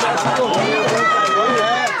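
Several high-pitched voices shouting over one another, loud and without a break.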